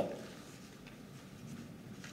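A pause in amplified speech: the man's voice dies away in the hall's echo, then only faint room noise.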